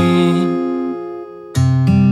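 Acoustic guitar chord ringing and fading away, then a new chord struck sharply about one and a half seconds in.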